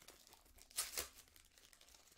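Foil trading-card pack wrapper being torn open and crinkled by hand, with two short, sharp rips a little before and at about one second in.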